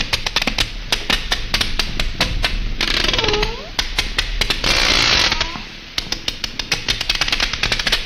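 Recording of sperm whale echolocation clicks played back: trains of sharp clicks at changing rates, sparse in places and fast in others, with two short hissy stretches and a few brief curved whistle-like sweeps about three seconds in.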